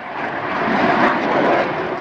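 Jet aircraft engine noise, a steady rushing sound that swells over the first second, holds, and fades away near the end.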